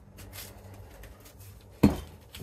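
Light rustling and a few soft ticks of a paper sheet and a round mask being handled, then one sharp, loud knock near the end as something is set down on the work surface.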